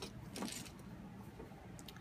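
Small plastic Lego minifigure pieces being picked up and handled, with a sharp click about half a second in and a few fainter ticks near the end.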